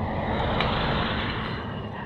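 A motor vehicle running close by: steady engine and road noise that eases off slightly near the end.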